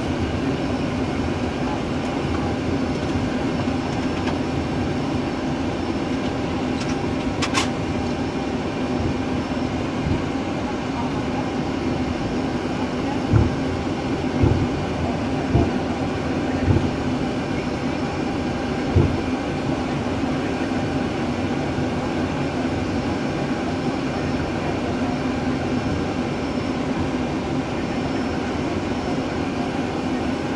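Steady Boeing 737 cockpit noise while taxiing: engines at idle with a constant hum over a rolling rumble. A sharp click sounds early on, and a run of five low thumps about a second apart comes partway through.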